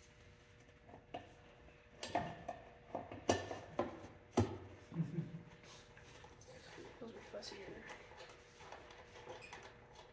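Several light knocks and taps between about two and five seconds in, from clay and tools being handled at a pottery wheel, over a faint steady hum.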